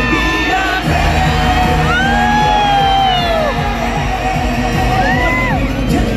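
Live pop song played loud through a concert hall's PA, with male voices singing over the backing music and fans yelling and cheering.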